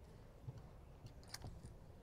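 Near silence: quiet room tone with a low hum, broken by one faint sharp click about a second and a half in.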